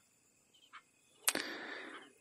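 Near silence for about a second, then a sharp mouth click and a short, soft in-breath from a man pausing between phrases of a talk.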